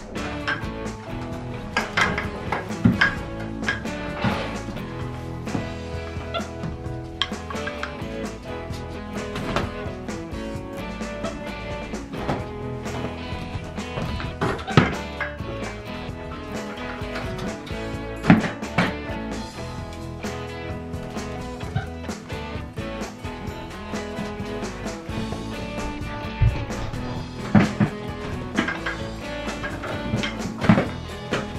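Background music with a steady beat, with a few sharp knocks standing out from it.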